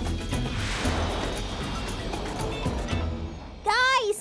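Background music under a cartoon jet whoosh as the flying car-plane's thrusters carry it through the air, then a voice calls out near the end.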